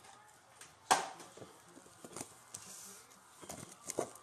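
Cardboard trading-card blaster boxes and foil packs handled by gloved hands on a table: a sharp tap about a second in, then a few softer knocks and rustles.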